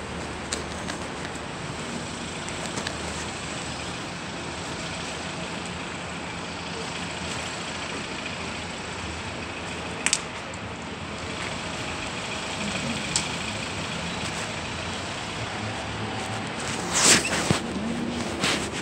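Steady city street traffic noise, with a sharp click about ten seconds in and a few louder knocks near the end.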